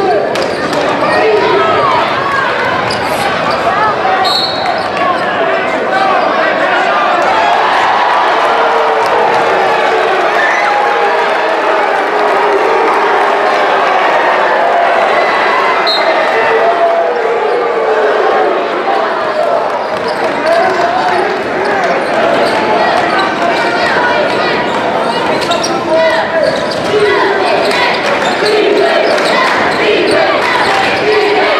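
Gymnasium crowd din during a high school basketball game: many voices talking and calling out at once, echoing in the hall, with a basketball being dribbled on the hardwood floor. Two brief high-pitched chirps stand out, about four seconds in and again near the middle.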